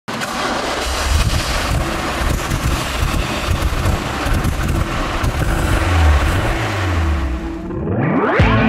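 Alfa Romeo GTV 1750's twin-cam four-cylinder engine running, heard from behind the car, with a deep exhaust rumble that swells about six seconds in. A rising musical sweep comes in at the very end.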